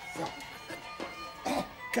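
Music playing with plucked string notes about every half second over sustained tones, the dance music for a belly dance.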